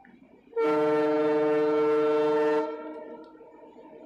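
A loud, steady horn blast at one unchanging pitch, about two seconds long, starting about half a second in and cutting off, with a short fading tail.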